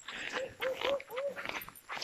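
Four short, faint calls from a distant animal, each rising and falling in pitch, in quick succession about a quarter second apart, over light rustling steps.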